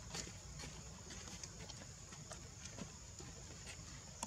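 Faint outdoor ambience: scattered light clicks and taps over a steady high-pitched hum and a low rumble.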